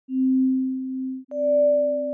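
Electronic logo sting of pure, steady tones: a low tone sounds first, and about a second in a higher tone joins it with a short tick, building a chord note by note.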